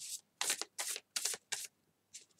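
A deck of Nature's Whispers oracle cards being shuffled by hand: five quick bursts of cards sliding against each other, about two or three a second.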